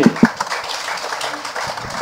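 Audience applauding: many hands clapping together at a steady level.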